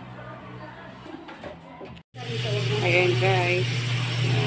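A steady low hum, with faint voices in the background. The sound cuts off abruptly about halfway through and comes back louder.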